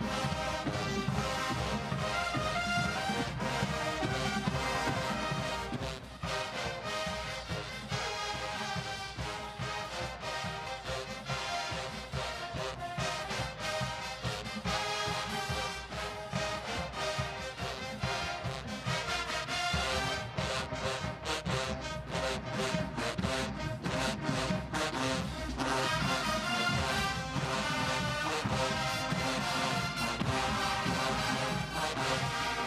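Marching band music led by brass, with a steady drum beat.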